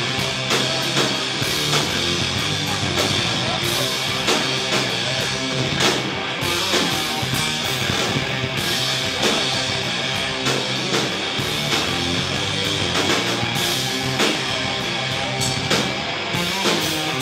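Live metal band playing: distorted electric guitars over a drum kit, with steady drum hits throughout.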